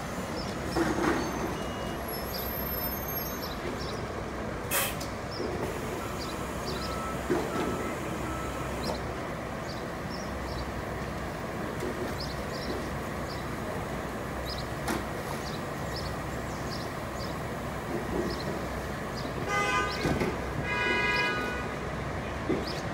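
Nova Bus LFS articulated city bus running steadily at low speed and at idle at the curb, with a low rumble. About two seconds before the end, a short run of beeps sounds.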